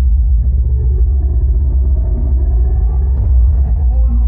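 Live amplified band music, dominated by a loud, steady low bass rumble that swamps the recording, with fainter guitar and instrument tones above it.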